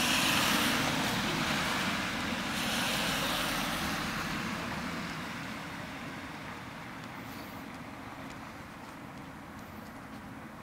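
Road traffic passing: the tyre-and-engine noise of vehicles going by, loudest at the start and again about three seconds in, then fading away.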